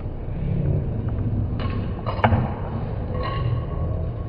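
Steel balls rolling along a curved steel track with a continuous low rumble. There are sharp clicks a little past one and a half seconds and again about two seconds in as the balls collide, and a brief metallic ring near the end.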